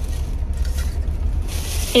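Low steady rumble inside a car cabin.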